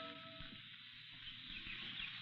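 The last held notes of an orchestral music bridge die away under the hiss of an old broadcast recording. Faint bird chirps then begin in the second half: a birdsong sound effect for the radio drama's garden scene.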